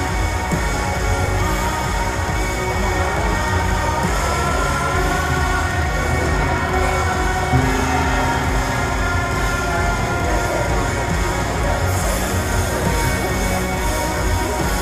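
Background music playing steadily over a low pulsing bass.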